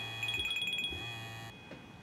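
Mobile phone ringing with a rapid, trilling two-tone ringtone over a low buzz. The ringing stops about a second in and the buzz shortly after, as the call is picked up.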